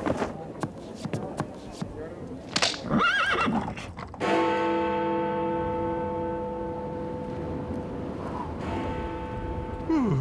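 Cartoon sound effects of a horse: a run of hoof clops, then a wavering whinny about three seconds in. A sustained music chord follows from about four seconds in.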